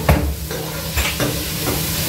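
Metal spatula stirring frying food in an enamelled pot, with several light knocks and scrapes of the utensil against the pot over a faint sizzle.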